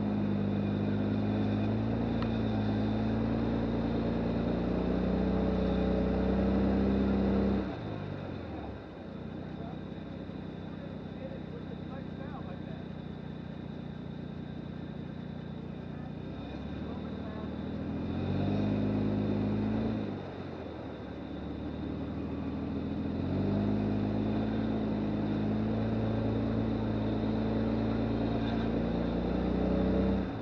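1997 Lexus LX450's 4.5-litre straight-six engine pulling steadily at low revs in a slow off-road crawl, with a steady hum. About eight seconds in, the revs drop back to idle. The engine picks up again briefly around eighteen seconds and once more from about twenty-three seconds on.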